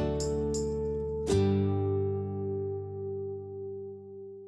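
Background music on acoustic guitar: plucked notes, then a final chord struck about a second in that rings out and slowly fades.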